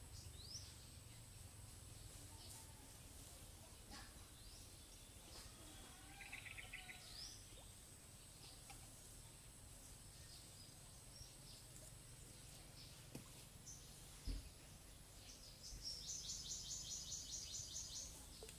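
Quiet outdoor ambience with faint bird calls: scattered short chirps, then a rapid, fast-repeating trill near the end. There is a single soft thump late on.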